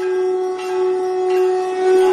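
A conch shell (shankh) blown in one long, steady note that starts abruptly and holds its pitch throughout.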